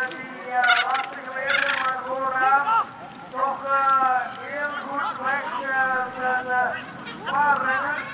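Spectators shouting encouragement at passing cyclocross riders: loud, high-pitched, drawn-out yells from several voices, one after another and overlapping, with two short hissing bursts in the first two seconds.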